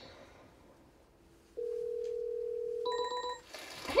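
Telephone ringback tone heard over the line: a steady low two-note tone starting about a second and a half in and lasting just over a second, then a short, higher beep as the call is answered.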